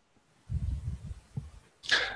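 Breath noise on a microphone: a low rumble of air across the mic, then a short hissing intake of breath near the end.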